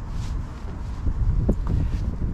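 Wind buffeting the camera microphone with an uneven low rumble, and a couple of light knocks about one and a half seconds in from someone clambering back aboard a boat.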